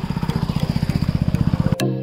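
A fast, low pulsing rumble that swells louder and cuts off abruptly near the end, where background music with a steady beat starts.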